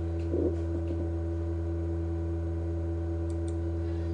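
Steady electrical hum from the recording setup, with a few faint computer mouse clicks in the first second.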